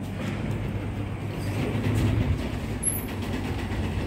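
Freight elevator car running: a steady low hum and rumble inside the stainless-steel car, swelling slightly midway.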